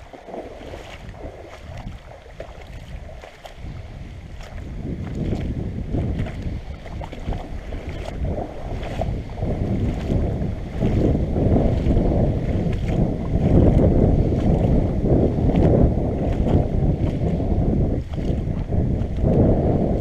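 Muffled sloshing and splashing of shallow river water right at a GoPro in its waterproof housing, as someone wades upstream with the camera held low. The noise grows louder about four seconds in, with scattered knocks.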